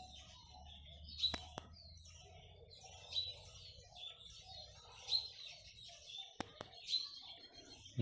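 Small birds chirping faintly, a short high call repeated about every two seconds, with a couple of sharp clicks in between.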